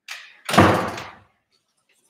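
A door shutting with a loud bang about half a second in, preceded by a fainter rustle.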